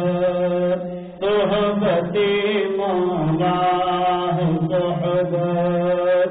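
A solo voice chanting an Urdu Sufi devotional poem (kalam) in long held notes that glide from pitch to pitch, with a short breath pause about a second in.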